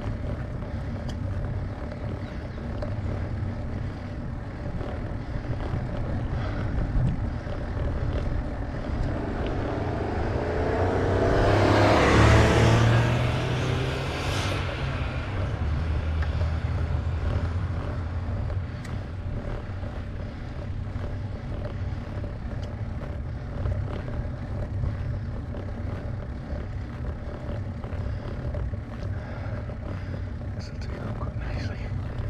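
A car passes the cyclist on a narrow lane, its engine and tyre noise swelling over a few seconds, peaking about halfway through and then fading. A steady low rumble runs underneath throughout.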